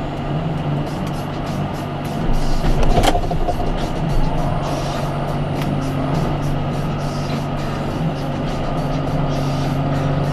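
Farm tractor engine running steadily while its front loader works, louder for a couple of seconds about two seconds in, with a sharp knock about three seconds in.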